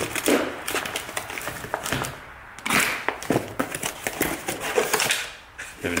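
A cardboard box being torn open by hand, with irregular tearing, scraping and paper crinkling.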